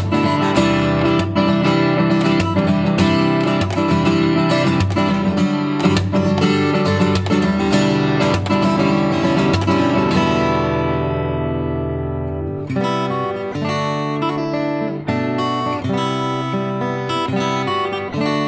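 Steel-string acoustic guitar played fingerstyle: a busy run of plucked notes, then a chord left to ring and fade for a couple of seconds past the middle, before the picking starts again.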